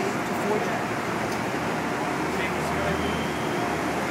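City street sound: steady traffic noise with scattered voices of people nearby, and a low vehicle rumble that swells through the middle.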